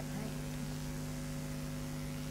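Steady electrical mains hum, a low buzz with several fixed pitches that runs on without change.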